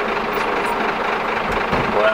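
Scania truck's diesel engine idling steadily, heard from inside the cab, with a brief low thump near the end.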